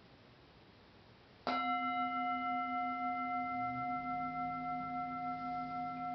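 Near silence, then about one and a half seconds in a singing bowl is struck and rings on with several clear overtones, fading only slowly. A fainter low tone joins about halfway through.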